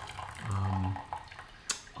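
Tea pouring from a porcelain gaiwan into a glass pitcher, a thin trickling stream. A short hummed "mm" comes about half a second in, and a single light click near the end.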